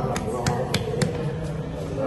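Four quick, sharp taps in the first second, about three a second, over a background murmur of voices.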